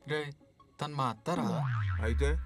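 Two brief vocal sounds, then a comic falling sound effect: a tone that slides steeply down in pitch over about a second and ends in a loud, deep low tone.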